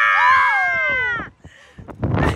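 A woman's high-pitched scream on a slingshot thrill ride, held for about a second and then sliding down in pitch before breaking off.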